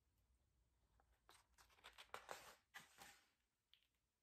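Near silence, broken in the middle by a few faint rustles and soft clicks of paper pages being turned in a hardcover picture book.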